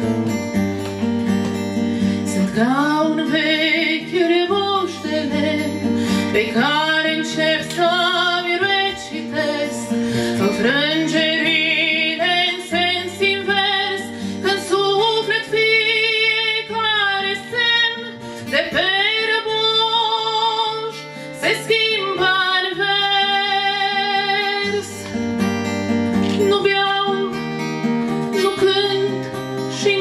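A woman singing a song with vibrato while strumming an acoustic guitar.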